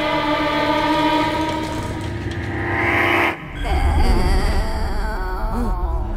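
Film soundtrack sound design: a sustained, horn-like chord with a hiss swelling beneath it, which cuts off abruptly a little past halfway and gives way to a low rumble with wavering tones.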